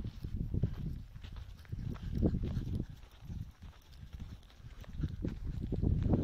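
Gusts of wind rumbling on the microphone, swelling and fading every second or two.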